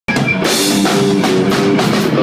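Live rock band: electric guitar playing held notes over a drum kit, with cymbal and drum hits. It starts abruptly, mid-song.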